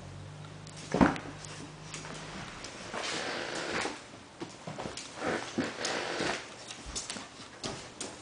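Shih tzu puppy making small sounds while chewing and tugging at a sock on a hardwood floor, in irregular spells. A sharp knock about a second in is the loudest sound.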